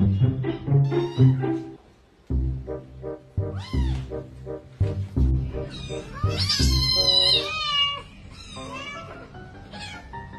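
Kittens mewing while wrestling: several high cries that rise and fall, the loudest run about six to eight seconds in, over background music.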